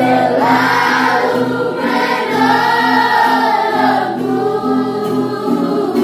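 A group of children singing an Indonesian Christian worship song together, holding long notes, over a strummed acoustic guitar.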